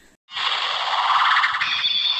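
Electronic transformation sound effect from the speaker of a Bandai Black Spark Lens toy (Ultraman Tiga transformer): a rushing sound starts suddenly, swells, then changes near the end as a high steady tone comes in.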